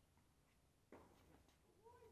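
A tennis ball struck by a racket once, about a second in, faint and distant with a short ring after it. Near the end comes a brief tone that rises and falls.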